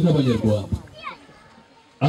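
Speech for about the first second that trails off, leaving faint voices of a crowd with children among them.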